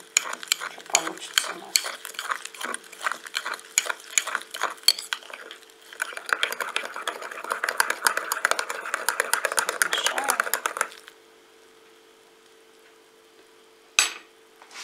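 Metal teaspoon stirring instant cocoa powder into milk in a ceramic mug. First come irregular clinks of the spoon against the mug for about six seconds, then faster, continuous swirling and scraping for about five seconds, which stops abruptly.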